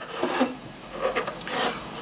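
A few short scrapes and rubs of small metal parts being handled on a wooden tabletop: a spanner and a pair of stacked magnets are moved and picked up.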